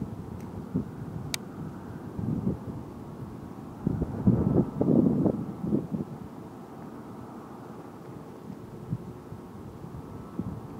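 Wind buffeting the microphone: an uneven low rumble in gusts, strongest about four to six seconds in, with one brief sharp click just over a second in.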